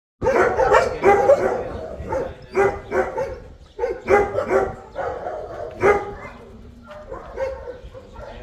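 A dog barking repeatedly, short barks often in pairs about half a second apart, loudest at the start and growing fainter toward the end.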